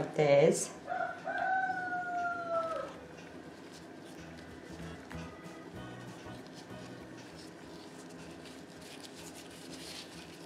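A rooster crowing once, about a second in: one drawn-out call that holds its pitch and then slides down at the end. After it, faint rustling of damp crepe paper being peeled off a dyed egg.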